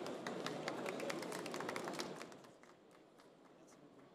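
A small audience applauding at the end of a talk: a scattering of separate claps that dies away a little over two seconds in.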